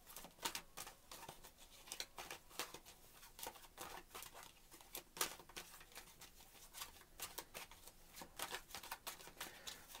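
A deck of tarot cards being shuffled by hand: faint, irregular soft clicks and flicks of cards against each other.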